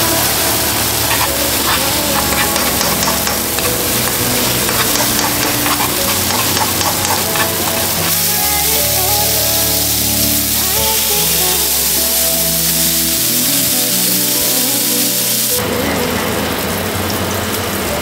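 Egg and sausage patties sizzling as they fry in a skillet and on a griddle, a steady frying hiss, with background music playing over it. The sound changes abruptly about fifteen seconds in.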